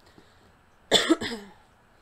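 A woman coughs, one short cough about a second in.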